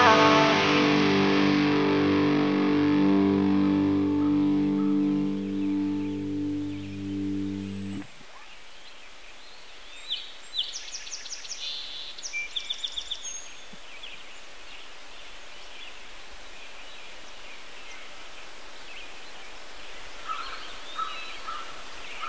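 The song's closing guitar chord rings out and fades for about eight seconds, then cuts off suddenly. Outdoor ambience follows, with bird chirps: a quick run of high chirps a couple of seconds after the cut and a few softer calls near the end.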